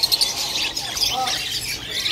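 A cage full of budgerigars chattering, a continuous dense mass of high chirps and warbles from many birds at once.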